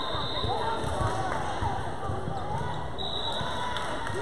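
Gym hubbub from players and spectators calling out, with scattered thumps of a ball and feet on a hardwood court.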